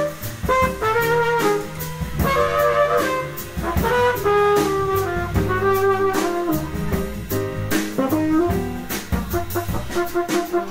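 Live jazz quartet: a trumpet plays a moving melodic line over piano, bass and drum kit, with cymbals struck throughout.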